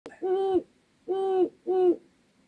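Owl hooting three times: short hoots of steady pitch, the last two closer together.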